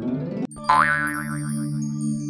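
Children's-song intro music: a held low chord with high twinkling tones, and a cartoon boing sound effect, a springy wobble that starts just under a second in and dies away.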